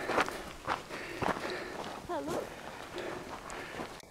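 Irregular footsteps on a loose gravel and scree trail, walking downhill. About two seconds in there is a short wavering voice-like sound.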